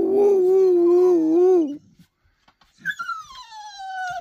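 A man's imitation howl, a long wavering 'wouhou', dies away about two seconds in. After a short pause, a dog gives a high whine that falls steadily in pitch near the end.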